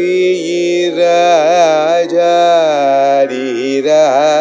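Carnatic vocal singing: long held notes that slide and shake in pitch with gamaka ornaments, illustrating a raga phrase.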